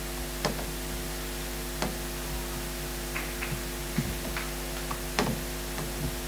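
A few scattered knocks and taps, handling noise as a framed painting is moved on its easel. They sound over a steady electrical hum.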